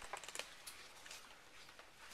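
Faint light clicks and taps of playing cards being put down on a wooden table, several in the first half second and a few more after.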